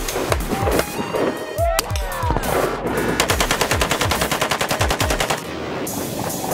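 Automatic gunfire: a few separate shots, then a long rapid full-auto burst from about three seconds in, stopping shortly before the end, over background music with a heavy bass beat.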